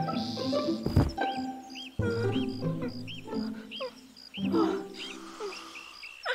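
Cartoon snoring, a loud low snore about every two seconds, over light sneaking background music with short high notes repeating two or three times a second.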